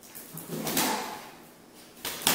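Plush squeaky dog toy squeaking as a Chihuahua puppy chews and shakes it, one drawn-out squeak peaking a little before the middle.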